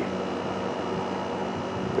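Steady drone of a small helicopter working at a distance overhead, a constant hum with a faint high whine and no change through the moment.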